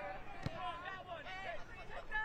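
Faint, distant shouts of players calling to each other across a soccer pitch, with a single dull thud about half a second in.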